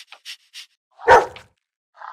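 A single loud dog bark about a second in, preceded by a few light, quick ticks.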